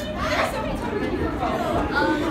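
Many people chattering over one another in a large room, with no single voice standing out.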